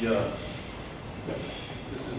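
A man's voice briefly at the start, then steady room noise with faint high steady tones.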